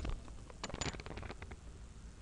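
Faint, irregular clicks and rustles: handling noise near the microphone, such as a computer mouse being moved and clicked.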